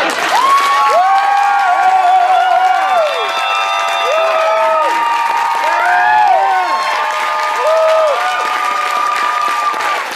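Audience applauding and cheering loudly, with several voices whooping in long held calls that rise and fall above the clapping.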